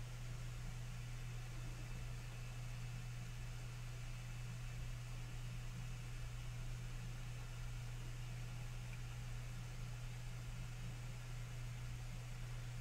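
Steady low hum with a faint hiss: background room tone, with no distinct sound from the paint or canvas.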